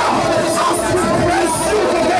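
A church congregation singing and shouting praise together, loud and steady, with a man's voice through the microphone leading over it.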